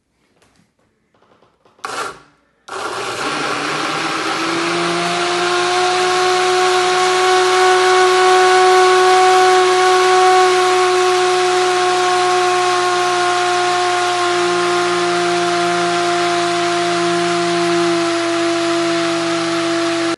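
Arcbt single-serve personal blender running on a thick avocado shake: a knock about two seconds in, then the motor starts with a whine that rises briefly as it comes up to speed and then holds steady, cutting off suddenly at the end.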